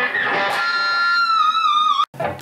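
Electric guitar playing a lead phrase: a few quick notes, then from about half a second in a single held note that wavers with vibrato and sags slightly flat before breaking off abruptly at the end.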